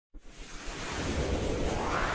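Intro sound effect: a rushing whoosh that starts suddenly and swells steadily louder.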